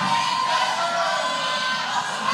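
Fight-night crowd noise from spectators around the cage, with one long held shout over the general hubbub.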